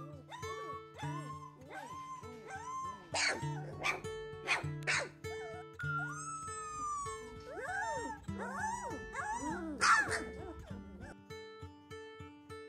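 Three-week-old golden retriever puppies whimpering and yipping in short rising-and-falling cries, about one a second, with a longer falling whine about six seconds in and a quick run of cries near the end, over background acoustic guitar music.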